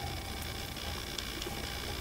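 Quiet steady room hiss with a few faint small ticks.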